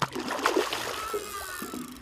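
A hooked snapper thrashing at the surface beside the boat, throwing water in a burst of splashing that is loudest about half a second in and eases off after about a second and a half.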